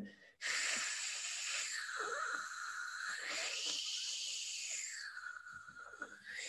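A man's long voiceless fricative, a raspy hiss made with the back of the tongue against the roof of the mouth, as in German 'ch'. As the tongue slides forward and back, the hiss drops in pitch, rises to a higher peak midway, then falls again near the end.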